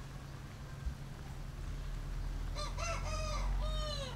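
A rooster crowing once, starting about two and a half seconds in: a few short notes, then a longer held note that falls at its end.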